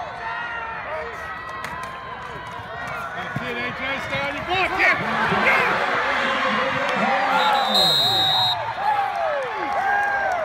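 Football crowd and sideline voices shouting, growing into loud cheering about five seconds in as a touchdown is scored. A referee's whistle blows for about a second near eight seconds in.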